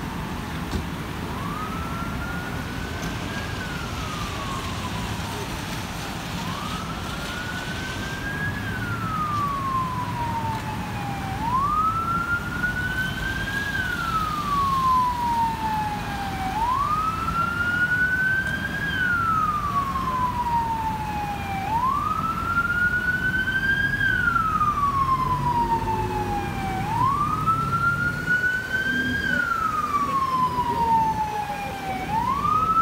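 Emergency vehicle siren wailing in a slow cycle, one rise and fall about every five seconds: a quick climb in pitch, then a long falling sweep. It gets louder about a third of the way through, over a low rumble of wet street traffic.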